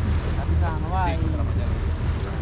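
Motorboat under way: a steady low engine rumble mixed with wind buffeting the microphone and water rushing past the hull.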